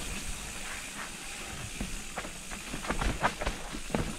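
Mountain bike rolling down a dirt singletrack: a steady hiss of tyres and rushing air, broken by scattered knocks and rattles from the bike over the rough trail. The knocks come more often in the last second or so.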